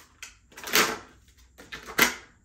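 Plastic blister packaging crackling and snapping as a slicker brush is pulled out of it: a small click, then two louder crinkling bursts about a second apart.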